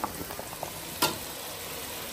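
Pots cooking on a gas stove: a steady bubbling hiss from rice boiling hard in a large aluminium pot, with one sharp click about a second in.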